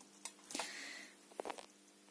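Faint handling sounds of a small RC car ESC and its wires being set on a kitchen scale: a few light clicks, with a short rustle about half a second in and two more clicks about a second and a half in.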